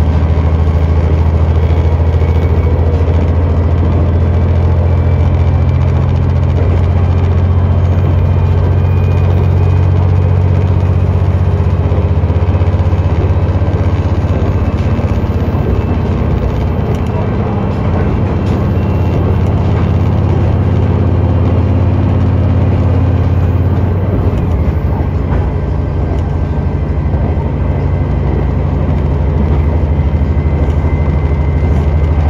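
A KiHa 126 diesel railcar running at speed, heard from inside the passenger car: a steady, low diesel engine drone over continuous wheel-and-track running noise. The level dips slightly around the middle.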